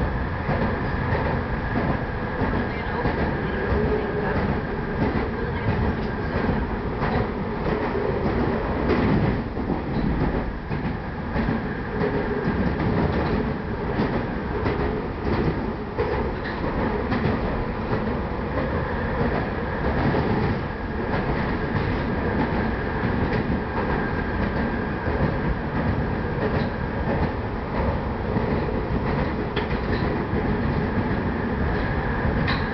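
PATCO rapid-transit train running at speed, heard from inside the front car: a steady rumble of wheels on rail with scattered clicks from the track and a thin high whine that drops out for a while in the middle.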